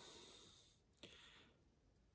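Near silence, with two faint breaths, one at the start and one about a second in.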